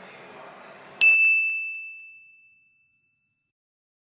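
A single bright ding: one high tone struck about a second in and ringing out, fading over about a second and a half. Faint hiss comes before it.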